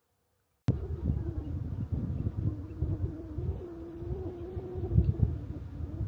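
Wind buffeting the microphone outdoors, a loud gusting rumble that starts suddenly about a second in, with a low wavering hum running over it.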